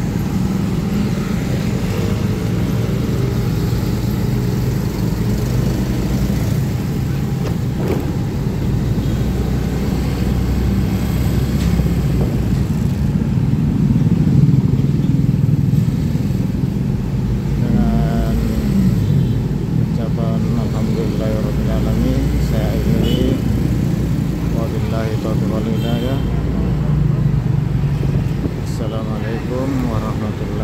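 Engine hum and street traffic noise in slow, congested traffic, with motorcycles running close by.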